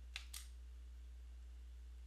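Near silence: a steady low hum, with two faint clicks a fraction of a second apart near the start.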